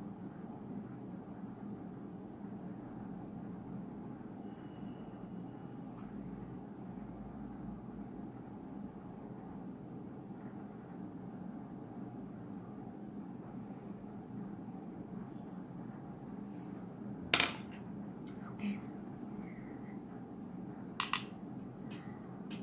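Steady low background hum, with a sharp click about three-quarters of the way through and a quick double click near the end, from makeup tools being handled: a compact mirror and an eyeshadow brush.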